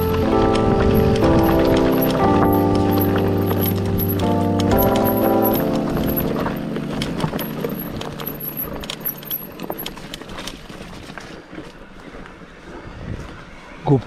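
Background music that fades out over the first half, leaving a mountain bike rattling and clicking as it rolls down a rocky dirt trail.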